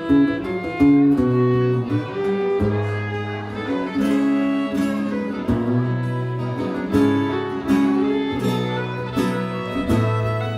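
Live fiddle and acoustic guitar playing an instrumental passage: a bowed fiddle melody over strummed guitar chords.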